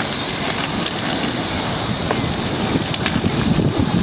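Large bonfire of wooden planks and scrap burning hard, crackling and popping steadily with many small sharp snaps.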